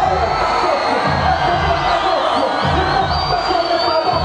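Live hip hop music over a loud PA, with a repeating heavy bass beat and a crowd cheering along.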